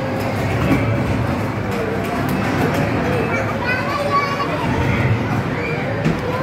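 Busy arcade din: many children's voices and chatter overlapping, with the electronic sounds of an arcade racing game running underneath.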